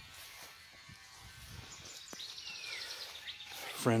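Quiet outdoor background noise, with a faint high-pitched chirping for about a second and a half in the middle.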